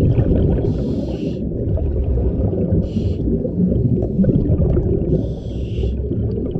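Underwater breathing through a scuba regulator: three short hisses of drawn-in air over a continuous low underwater rumble.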